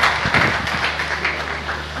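Audience applauding, a dense patter of many hands clapping that thins out and dies down near the end.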